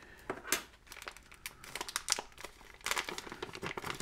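Thin clear plastic packaging bag crinkling and crackling as it is handled and opened, a run of short sharp crackles that grows busier near the end.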